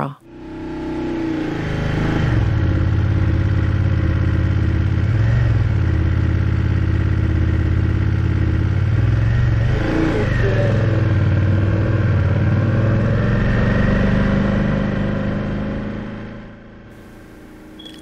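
A motorcycle engine runs at low road speed. Its pitch dips and rises about halfway through as the bike slows almost to a stop and pulls away again. The sound fades in over the first two seconds and fades down about a second before the end.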